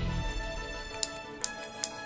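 Three sharp clicks, a little under half a second apart, from a small solenoid valve opening and closing, over steady background music.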